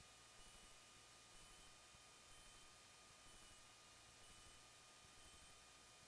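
Near silence: only a faint hiss with a thin steady tone, and no engine is heard.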